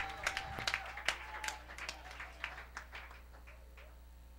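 Congregation applauding: scattered hand claps that thin out and die away toward the end.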